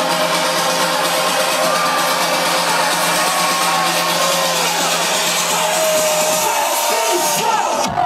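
Loud trance dance music from a DJ set, recorded from within the crowd, with crowd voices mixed in. The deep held bass note drops out a little before the end.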